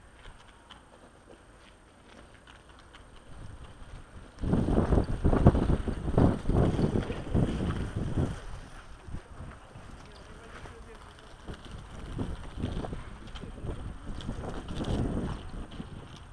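Wind buffeting the microphone in gusts, heaviest from about four to nine seconds in, with another gust near the end.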